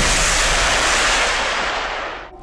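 BM-21 Grad multiple rocket launchers firing a salvo: a continuous rushing noise of rockets leaving the tubes in quick succession, tapering off near the end.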